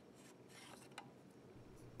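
Near silence: room tone with one faint click about halfway through.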